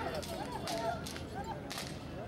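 Three sharp cracks of a handler's whip driving a pair of draught bulls, the last one the loudest, over men's shouting voices.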